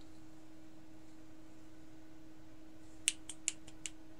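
Room tone with a steady low electrical hum, then a quick run of about five light, sharp clicks within a second near the end.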